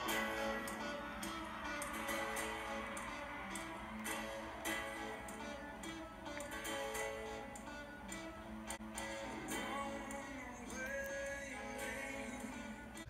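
Music: a song with guitar and a steady percussive tick, fairly quiet.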